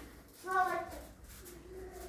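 Indistinct voice in the room: a short vocal sound about half a second in, and another held tone near the end.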